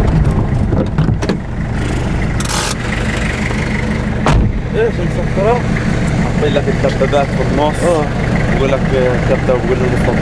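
Car engine running with a steady low hum, heard from inside the car, with a single knock about four seconds in. Men's voices talking over it from about halfway through.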